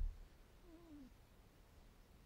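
A low thump at the very start, then a faint short squeak, about half a second long, that falls in pitch.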